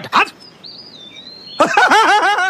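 A thin, high whistle-like tone lasting about a second, then a man's loud, rapidly repeated cries starting about a second and a half in.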